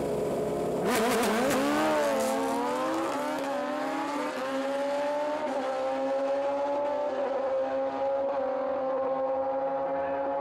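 Two naturally aspirated Suzuki Hayabusa inline-four drag bikes held at steady revs on the line, then launching together about a second in: the engines rise sharply in pitch and shift up through the gears several times as they run away down the strip. Their sound slowly fades with distance toward the end.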